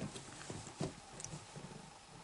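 Soft bumps and rustling on a blanket in a cat's nest box, with one louder bump just under a second in.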